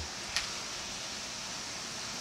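Steady rushing noise of storm wind and rain, with a faint click about a third of a second in.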